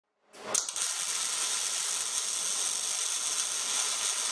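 Logo-intro sound effect: a sharp click about half a second in, then a steady, high crackling hiss, like a shower of sparks.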